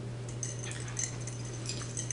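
A few faint, light clicks and clinks of a utensil against a serving platter, over a steady low hum.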